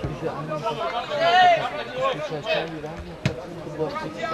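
Men's voices shouting and calling across an outdoor football pitch, with one sharp knock just over three seconds in.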